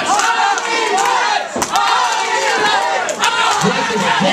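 Small wrestling crowd shouting and yelling, many high-pitched voices, children's among them, overlapping.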